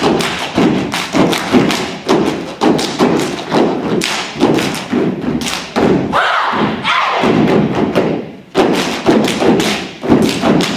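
A step team stomping on a wooden stage and clapping in unison, a steady rhythm of about two to three sharp hits a second. There is a short break in the pattern near the end before the stomps resume.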